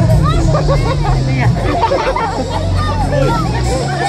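Crowd of onlookers chattering, many voices overlapping, over music with a steady low bass line.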